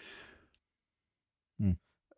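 A soft exhale at the start, then dead silence, then a brief murmured "mm" near the end.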